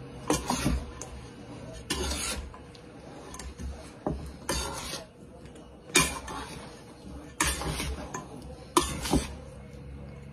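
Metal spoon scraping and knocking against a metal mixing bowl as soaked bread cubes are turned over in an egg-and-cream mixture: a string of short scrapes and clinks about every second or two.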